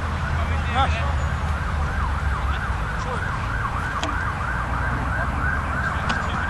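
Emergency-vehicle siren in the yelp pattern, rising and falling about three times a second, starting about a second and a half in, over a steady low rumble.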